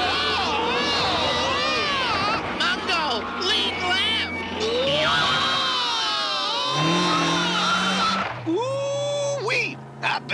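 Cartoon soundtrack: character voices laughing and yelling without words over a steady car-engine drone.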